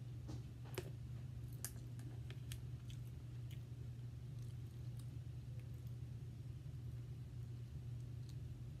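Scattered faint clicks and smacks from eating snow crab, mostly in the first few seconds: chewing, and handling the shell of the crab leg. A steady low hum runs underneath.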